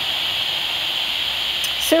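Steady, even hiss, with a man's voice starting right at the end.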